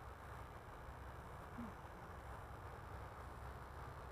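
Near silence: a faint, steady outdoor background of hiss and low rumble, with no distinct sound standing out.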